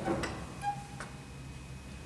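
Three sharp clicks from a pipe organ's stop knobs and mechanical action as the registration is changed between chords, with one short faint note sounding at the second click. Under them the hall's reverberation from the previous chord dies away.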